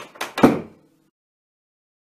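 A wooden interior door shutting: a couple of quick knocks and then a thud about half a second in, after which the sound cuts off suddenly.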